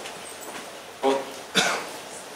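A man clearing his throat and coughing: two short bursts, about a second in and again half a second later, the second sharp and sudden.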